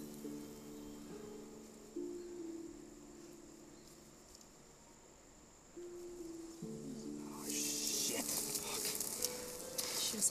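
Film score of sustained low chords that shift to new pitches a few times. From about three quarters of the way in, a loud hissing, crackling noise rises over the music.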